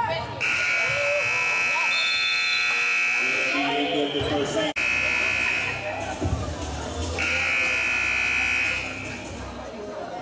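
Gym scoreboard buzzer sounding three times, signalling a stop in play: a long blast of about three seconds, a short one about a second, then one of about a second and a half. Voices in the gym are heard underneath and between the blasts.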